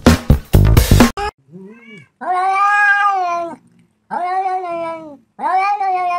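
Beat-driven background music for about the first second, cutting off suddenly; then a cat meowing: a short faint call followed by three long, drawn-out meows, each lasting a second or more.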